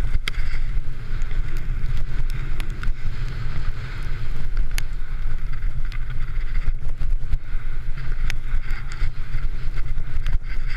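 Wind buffeting the microphone of a camera on a Yeti SB66 mountain bike riding fast down a slippery muddy trail, a steady rumble with tyre hiss. Sharp knocks and clatters of the chain and frame come through as the bike runs over bumps.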